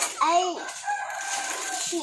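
A rooster crowing: a few short rising and falling notes, then one long held note lasting more than a second.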